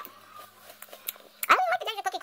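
Faint clicks, then about halfway through a loud drawn-out vocal sound that sweeps up and then holds its pitch.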